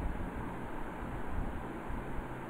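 Steady background hiss and low rumble of an open microphone with no one speaking, with a soft low bump at the very start.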